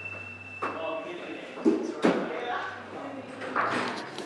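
Indistinct talking with two sharp knocks close together about halfway through.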